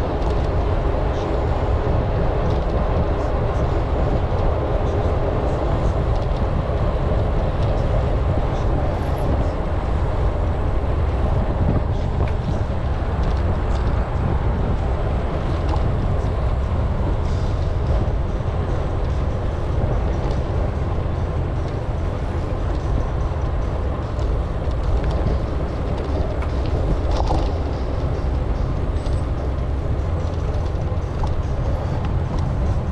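Bicycle riding along: steady wind rumble on the camera's microphone, with tyre and road noise.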